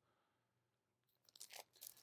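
Near silence, with a few faint crinkles of a shrink-wrapped vinyl record's plastic sleeve being handled in the second half.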